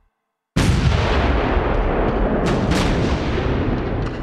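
Big naval guns firing a broadside. After a moment of dead silence a sudden loud blast hits about half a second in and carries on as a heavy, rolling rumble, with two sharper cracks just past the middle.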